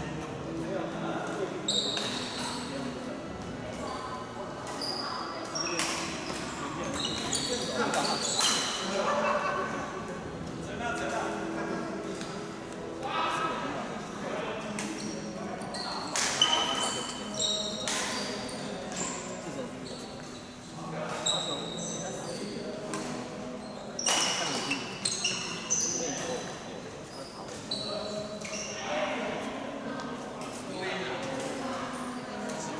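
A badminton doubles rally in a large echoing hall: irregular sharp racket strikes on the shuttlecock and quick footwork on the court. Indistinct voices are heard in the background.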